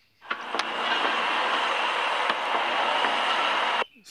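Steady rushing ambient noise from the opening seconds of a news video's soundtrack, captured directly from the phone's playback. It swells in within the first half second, holds level, and cuts off suddenly just before the end.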